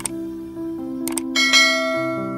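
Intro music holding a steady chord, with a click about a second in and then a bright bell-like chime ringing out. These are the sound effects of an animated subscribe-button click and notification bell.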